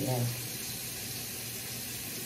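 A steady, even hiss of background noise, with the end of a spoken word at the very start.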